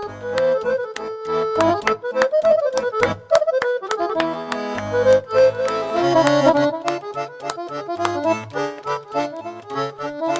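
Roland electronic accordion playing a lively folk tune, melody over chords, with a steady beat of sharp clicks running under it.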